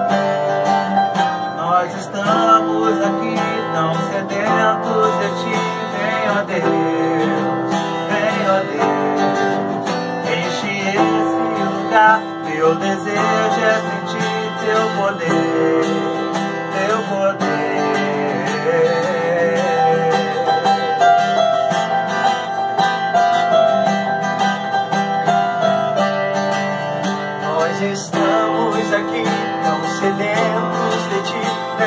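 Live acoustic guitar and a Roland E-09 keyboard accompanying male voices singing a song, without a break.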